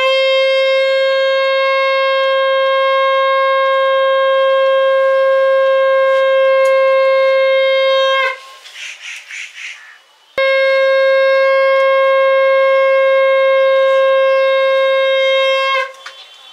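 Conch shell (shankha) blown in two long, steady blasts at one pitch, the first about eight seconds and the second about five and a half, with a short pause between them. The pitch dips briefly as each blast ends. It is the customary auspicious conch call of a Hindu rite.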